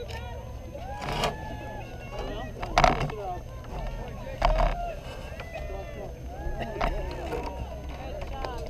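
Spectators' voices overlapping in distant chatter, with a few louder shouts about one, three and four and a half seconds in. A low wind rumble runs underneath.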